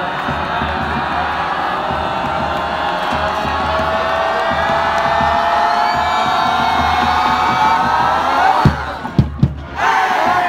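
Stadium crowd and marching band holding a long, rising cheer and sustained note through a football kickoff, growing louder until it breaks off about a second before the end, when sharp drum hits come in.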